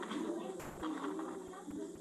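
Faint, indistinct low voice murmuring in a preschool classroom, heard through the playback of a recorded video, with a short noise about half a second in.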